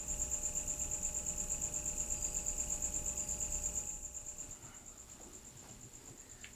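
Crickets chirping in a rapid, even, high-pitched pulse, loud at first and dropping to a softer level about four seconds in.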